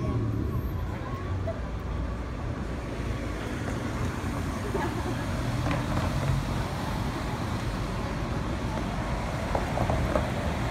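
Road traffic at a street intersection: cars driving past with a steady low rumble of engines and tyres.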